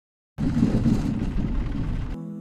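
Loud, irregular low rumble of a Pride Maxima mobility scooter rolling along a wooden boardwalk, cutting in suddenly after silence about a third of a second in.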